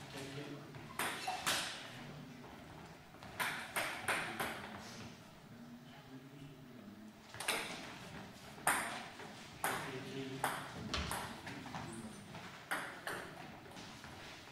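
Table tennis ball clicking off rackets and the table during doubles rallies: sharp knocks, a few quick clusters in the first half, then strokes about a second apart.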